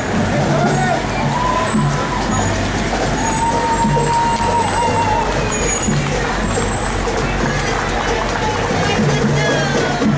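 Fire apparatus engines running as the vehicles roll slowly along the street, a steady low engine hum under bystanders talking.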